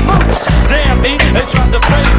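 Music with a heavy bass line plays over street skateboarding: the board's wheels and deck knock against a concrete curb several times.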